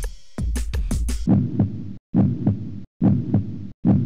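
Dramatic title-music percussion: a few sharp electronic drum hits over a low rumble, then heavy low thuds in a slow, heartbeat-like pulse, about one every 0.8 seconds.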